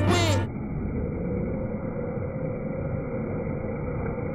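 Rap music cuts off about half a second in, leaving a steady, muffled rushing road noise with a faint low hum as the bike race goes by.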